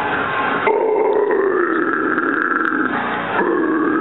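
A man's harsh screamed rock vocals into a handheld microphone: two long held screams, the first starting just under a second in and the second following a brief break near the end.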